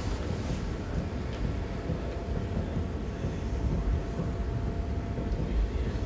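Room tone in a meeting room: a steady low rumble with a faint steady hum, and no distinct sounds.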